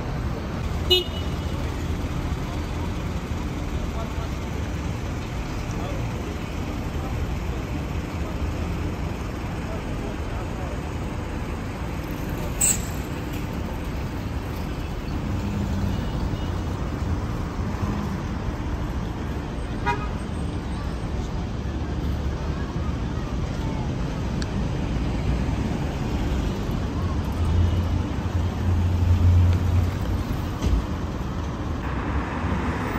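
Busy city street: steady traffic rumble with people talking nearby. A few short sharp clicks come through it, and a vehicle's engine swells loudly near the end as it passes close.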